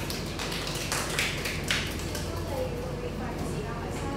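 Classroom room noise with faint murmured voices and a steady low hum. There are a few short taps and rustles, the clearest about a second in and again half a second later.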